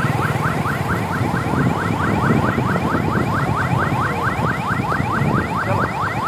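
Electronic siren sounding a fast repeating chirp, about five short rising sweeps a second, over the rumble of road traffic.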